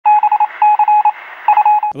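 Loud electronic beeping at a single pitch in three quick groups, each a longer beep followed by short rapid pips, like a telegraph or Morse signal. A man's voice starts as the beeps stop.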